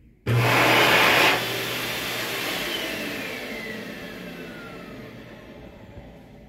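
Xlerator high-speed hand dryer switching on abruptly and blowing loudly for about a second. It then cuts off and its motor winds down, a falling whine fading away over the next few seconds.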